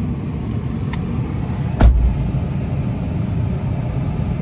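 Steady low rumble inside a car cabin, with a light click about a second in and a single sharp thump just before two seconds, the loudest sound.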